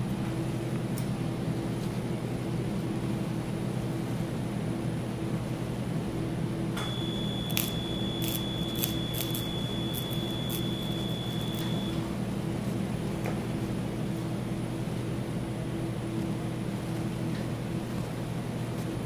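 Bipolar cautery unit giving a steady high activation tone for about five seconds, starting about seven seconds in, with a few faint crackling clicks while the tissue is sealed. A steady low hum runs underneath.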